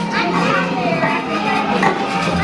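Children's voices: several kids talking and calling out at once in a busy play area.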